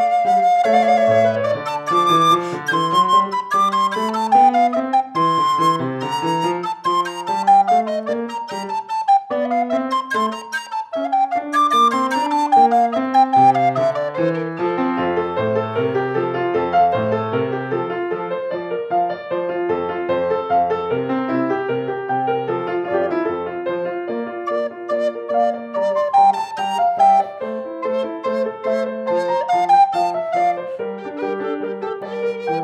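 Alto recorder and keyboard playing a Baroque sonata together, the recorder carrying quick running melodic lines over the keyboard part.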